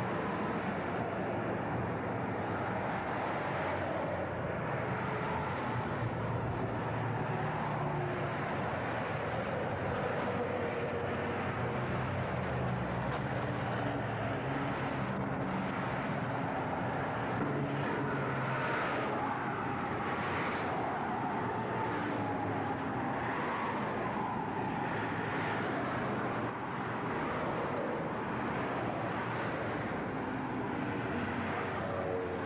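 Road traffic: cars driving past on a multi-lane road, a steady mix of engine and tyre noise.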